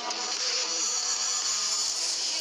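A steady, high-pitched buzzing drone in a trailer soundtrack, with faint low tones beneath.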